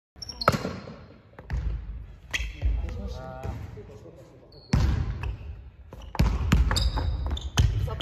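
Basketball dribbled on a hardwood gym floor during a one-on-one, as a series of hard, irregularly spaced bounces that echo in the large hall.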